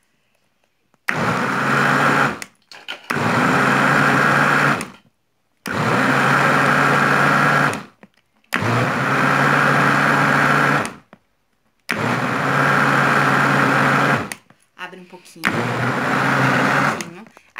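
Countertop blender pulsed six times in bursts of about two seconds with short pauses between, beating grated bar soap, water and baking soda into a thick paste.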